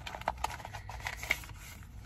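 Paper and plastic packaging from a home COVID test kit rustling and crinkling in the hands as it is unpacked, heard as soft, scattered crackles and small clicks.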